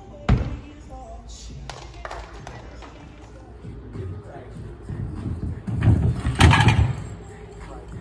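A sharp thud from a gymnast's hands or body striking the parallel bars or mat right at the start. Near the end comes a loud cluster of thuds as a gymnast runs and tumbles on the sprung tumble track, with voices in the background.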